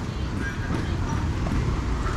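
City street ambience: a steady low traffic rumble with people's voices in the background and footsteps on pavement.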